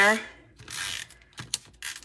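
Adhesive tape runner drawn across card stock, laying a strip of tape: one short rasping pass, then a few small clicks from the dispenser.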